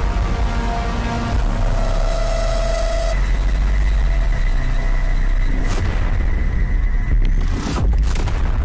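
Anime battle soundtrack: dramatic music with held notes over a sustained low explosion rumble, with sharp hits about six seconds in and again near the end.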